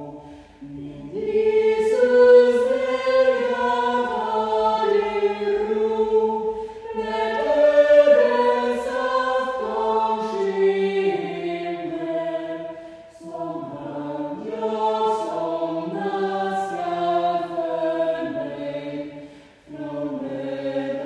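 A small choir of men's and women's voices singing a hymn in several parts, in long phrases with short breaths between them: about a second in, around thirteen seconds, and just before the end.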